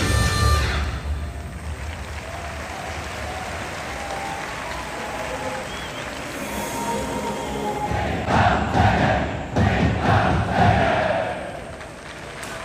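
Rock music cuts off about a second in, leaving the murmur of a large stadium crowd. About eight seconds in, football supporters break into a rhythmic chant of shouted calls that stops just before the end.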